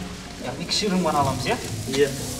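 Dry hay rustling and crackling as it is gathered up by hand from a pile.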